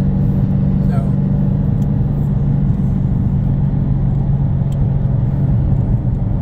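Steady road and engine noise heard inside a car cruising at freeway speed: a low, even rumble with a steady hum.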